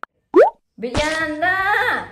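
A single short, loud rising pop a little under half a second in, followed by a woman's voice.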